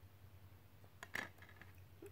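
Near silence with a low steady hum, broken about a second in by one brief click as a DVD disc is handled against its plastic case.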